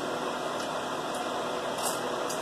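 Steady room hiss, like a fan or air conditioner running, with a few faint crisp ticks.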